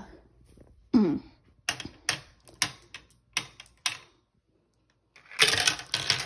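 A throat-clear, then about six sharp separate clicks of glass marbles being set onto a plastic marble run. Near the end comes a loud, dense clatter as the marbles are released and roll down the plastic track.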